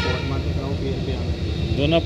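Talking over a steady low rumble of street traffic, with a man's voice starting again near the end.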